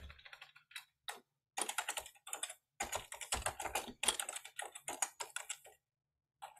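Typing on a computer keyboard: quick runs of keystrokes broken by short pauses, stopping just before the end.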